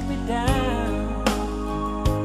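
Slow love song: a voice sings a drawn-out, wavering phrase early on over a sustained bass and a drum beat about every 0.8 s.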